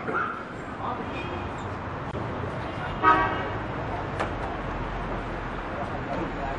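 A single short horn toot about three seconds in, the loudest sound here, over a steady low murmur of voices and room noise.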